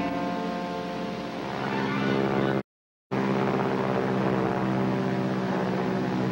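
Bomber's propeller engines droning steadily in a low, even hum. The sound cuts out completely for about half a second partway through: a dropout in the soundtrack.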